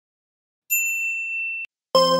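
A single high, bright 'ding' notification-bell sound effect, the chime that goes with clicking a subscribe button's bell icon. It starts about two-thirds of a second in, rings steadily for about a second and cuts off abruptly.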